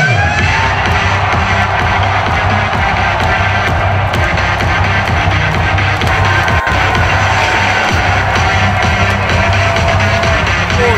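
Loud electronic music with a steady bass line.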